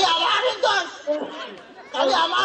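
Only speech: a voice talking, which trails off about a second in and leaves a short lull before the talk starts again.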